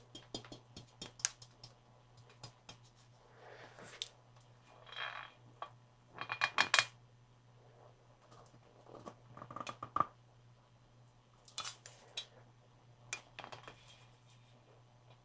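Fingers tapping and handling a clear water-filled skull-shaped container: a string of sharp clicks and taps, broken by a few short, noisier bursts of handling and water movement, the loudest about six to seven seconds in.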